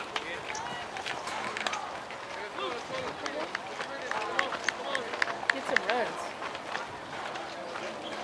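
Distant, indistinct voices of spectators and players calling and chattering across an open ball field, with a few short sharp clicks.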